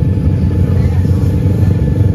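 Race-built TVS Apache RR310's single-cylinder engine idling steadily through its free-flow exhaust, a fast, even run of firing pulses.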